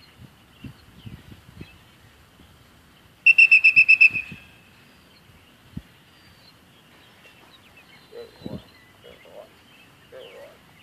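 A dog-training whistle blown once, with a rapid trill of about nine pulses lasting about a second. It is a whistle signal to a young dog being trained. Faint light steps or rustling and faint bird chirps sound around it.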